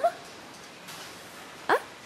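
Low room tone, then near the end a child's single short questioning "Ha?" that rises sharply in pitch.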